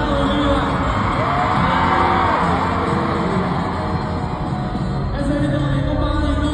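Amplified live band music with singing in a large arena, with the crowd yelling and whooping over it.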